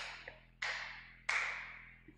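Three sharp strikes, evenly spaced about two-thirds of a second apart, each fading quickly in the room.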